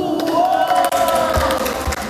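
Spectators and coaches shouting: one long held yell that rises in pitch and lasts about a second and a half, over crowd noise, with a few sharp impacts.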